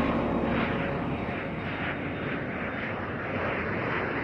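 Jet airliner in flight: steady engine rumble and hiss with a slow wavering in its upper range.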